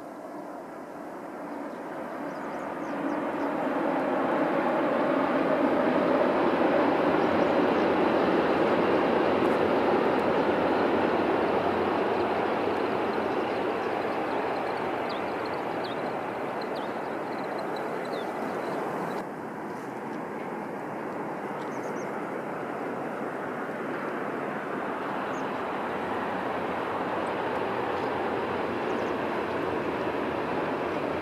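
A distant, steady rushing rumble that swells over the first few seconds, holds, then eases off, with a sudden small drop about two-thirds of the way through. Near the end a Tohoku Shinkansen train is running along the viaduct.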